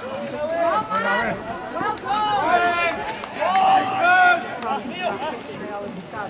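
Raised voices shouting and calling out during open play in a rugby match, with loud calls about two and a half and four seconds in.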